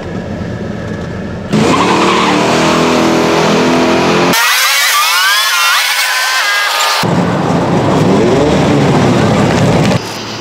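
Vehicle engine revving hard at a drag strip, coming in suddenly about a second and a half in, with its pitch climbing through the gears. In the middle stretch the low end drops away and only high, rising whines are heard.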